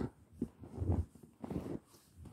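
Footsteps in deep fresh snow: three soft steps about half a second apart.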